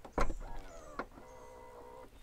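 Hyundai Tucson plug-in hybrid's power liftgate latching shut with a thud just after the start, followed by the steady whir of its electric motor and a short click about a second in.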